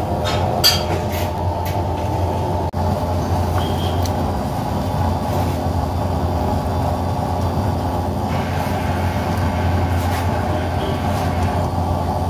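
A loud, steady, machine-like rumble with a constant low hum, with a few light clicks about a second in.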